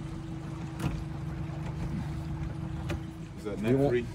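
Boat motor running steadily: a low hum with a constant higher tone above it.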